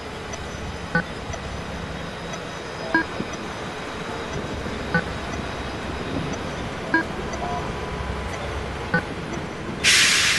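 Steady city street traffic noise with a short pitched tick every two seconds. A sudden loud hiss starts just before the end.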